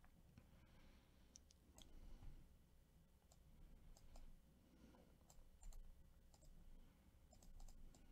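Near silence with faint, irregular clicks scattered throughout.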